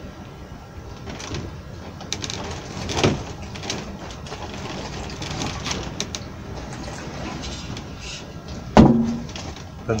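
Spray-gun thinners poured from a can through a paper paint-strainer funnel into a plastic cup, washing the filter out. A sharp knock comes near the end.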